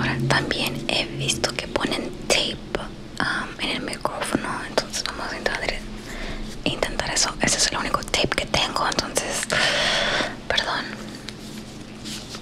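Close-up whispering into a microphone, broken by many short clicks and taps from handling a roll of masking tape near it.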